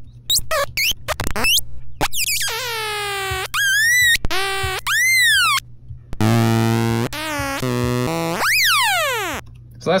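Rakit Disintegrated Cracklebox played dry by fingers bridging its metal contact pads, the skin completing the circuit. It gives a string of buzzy, pitched electronic squeals and chirps that cut in and out abruptly, arch up and down in pitch and end in a long falling swoop.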